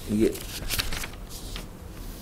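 Pages of a book being handled and turned: a few short, papery rustles in quick succession.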